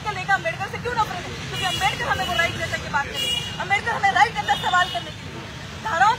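Speech from a crowded outdoor press scrum: voices talking over one another, with a steady low rumble underneath.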